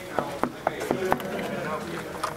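Knuckles knocking on a glass-panelled door: a quick run of about five knocks in just over a second.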